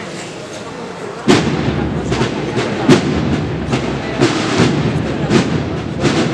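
Massed cornet-and-drum band starts playing suddenly about a second in, with heavy drum strokes about twice a second over the band, after a moment of audience murmur.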